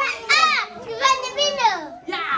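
Speech only: short, high-pitched voices of a young child and adults, rising and falling in a sing-song way, with brief pauses between phrases.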